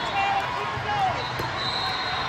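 Hubbub of many voices echoing in a large sports hall, with a volleyball bouncing on the court floor and a few short squeaks.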